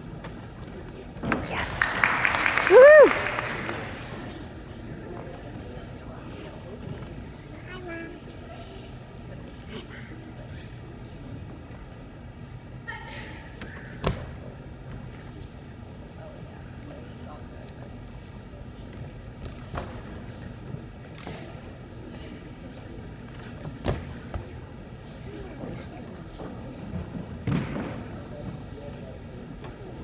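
Spectators in a gym: steady background chatter, with a loud burst of cheering and a gliding 'woo' shout about two to four seconds in. A few single thuds follow later.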